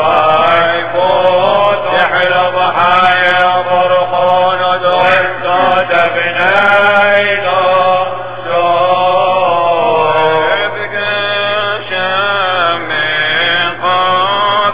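A man's solo voice chanting the Syriac Catholic Mass in a slow, ornamented melody, long notes bending between pitches, with short pauses between phrases about eight seconds in and again near the end.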